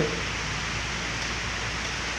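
Electric stand fan running: a steady rush of air from the spinning blades over a low, even motor hum.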